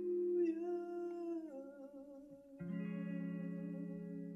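Instrumental close of a slow ballad on guitar with effects: sustained ringing chords that slide down in pitch about a second and a half in, then a new chord struck near the middle that rings out and slowly fades.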